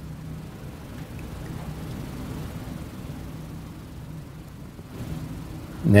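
Room background noise: a steady low hum with a faint even hiss, and no speech until a man's voice begins right at the end.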